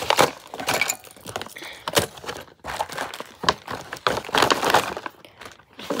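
Small items being put into a paper gift bag: rustling paper with irregular sharp clicks and knocks as hard objects bump against each other in the bag.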